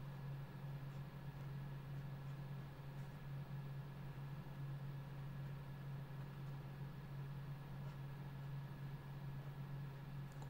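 Quiet room tone dominated by a steady low electrical hum, with a few faint scratches of a pen tip on sketchbook paper.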